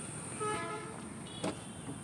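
A short vehicle horn toot about half a second in, then a single sharp click about a second and a half in, over a steady high insect buzz.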